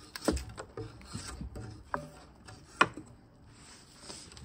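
A drawknife pulled along a log, scraping and peeling off the bark in several separate strokes. The sharpest scrapes come near the start, about two seconds in and near three seconds, and the last second is quieter.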